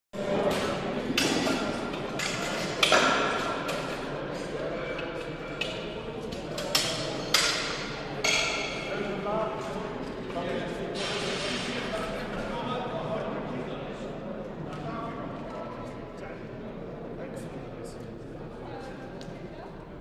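Murmur of voices echoing in a large sports hall, with several sharp, ringing knocks, most of them in the first eight seconds.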